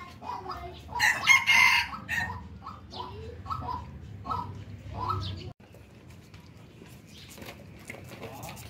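Chickens clucking in short repeated calls, with a loud rooster crow about a second in. The sound drops suddenly a little past halfway, leaving only fainter noise.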